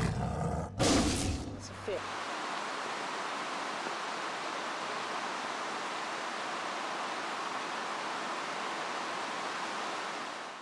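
Fast, shallow stream rushing steadily over rocks. The first two seconds hold the tail of an outro, a voice and music with a sharp burst.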